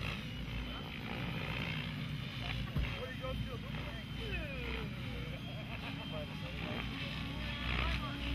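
Electric Mikado Logo RC helicopter in flight: a steady high motor and rotor whine over wind rumble on the microphone, with onlookers' voices about three seconds in.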